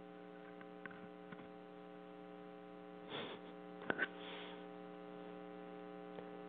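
Steady electrical mains hum, a stack of even buzzing tones in the recording, with a couple of faint short noises about halfway through.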